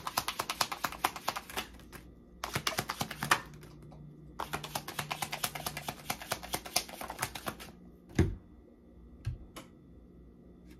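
A deck of tarot cards being shuffled by hand: three spells of rapid, dense card clicks with short pauses between them, then a single soft thump about eight seconds in, followed by a few stray clicks.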